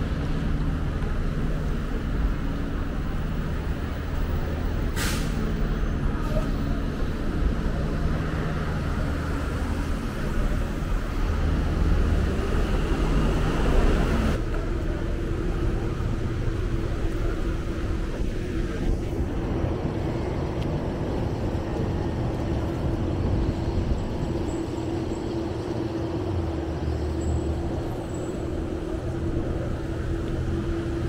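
Street traffic with heavy vehicles: a steady low engine hum from trucks and buses, a short air-brake hiss about five seconds in, and a vehicle revving up and passing about halfway through.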